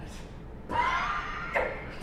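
A loud vocal outburst from a stage performer, a shout or cry lasting under a second, about a third of the way in, followed by a second short cry.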